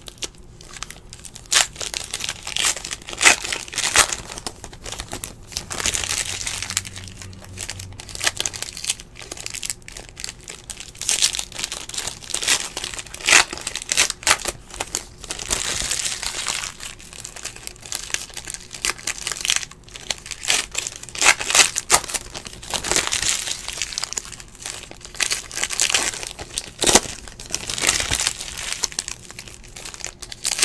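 Foil wrappers of Panini NBA Hoops basketball card packs crinkling and tearing as they are ripped open by hand, in an irregular run of crackles and short rips.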